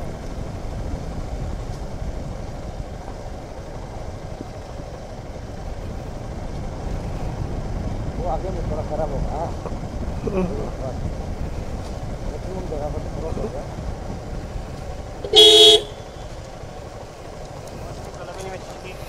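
Suzuki Gixxer 250 motorcycle running at low speed, with a steady low engine and road rumble. Near the end comes one short horn beep, the loudest sound, a warning to pedestrians walking ahead on the lane.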